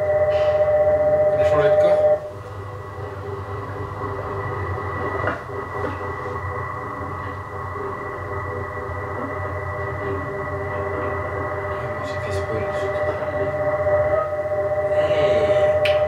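Electronic drone from a TV episode's soundtrack: several steady held tones over a low hum. It is louder for about the first two seconds, then drops and holds level.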